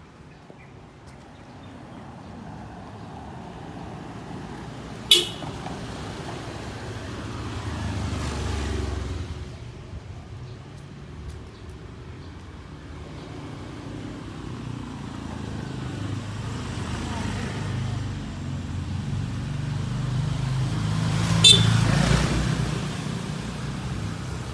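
Two short, sharp vehicle horn toots, about 5 s in and near the end, over the rumble of engines passing in a narrow street that swells and fades. The toots are friendly 'hey, I'm coming' warnings of approach, not angry honking.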